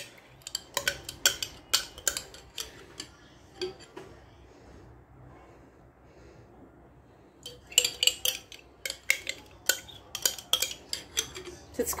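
Metal spoon clinking and scraping against a glass jar and a glass bowl while scooping out mayonnaise: runs of quick light clicks, a quieter pause of a few seconds in the middle, then more clicking.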